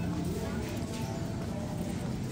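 Supermarket ambience: indistinct background voices over a steady low hum, with footsteps on a tiled floor.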